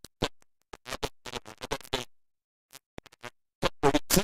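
Choppy, broken-up audio: short fragments of a voice or music, each a fraction of a second long, cut apart by sudden dead-silent gaps, with a long gap of about half a second past the middle. It sounds like a recording stuttering through dropouts.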